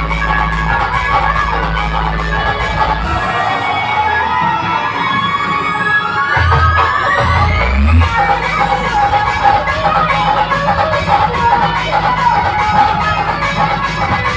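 Loud electronic dance music with heavy bass, played through a DJ sound system. The bass drops out about three seconds in while a rising sweep climbs for several seconds, and the full beat and bass come back about eight seconds in.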